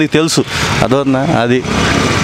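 A motor vehicle's engine and road noise come up about half a second in and run on steadily, under short bits of a man talking.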